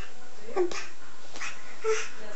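A seven-to-eight-month-old baby making a few short vocal sounds, three brief noises about half a second apart.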